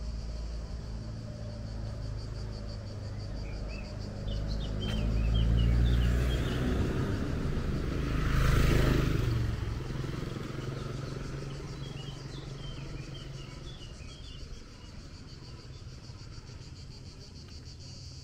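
Road traffic passing close by: a motor scooter and a car go past, their engine and tyre noise swelling to a peak about six seconds in and again around eight and a half seconds, then fading away. Insects buzz steadily throughout, with a few short chirps.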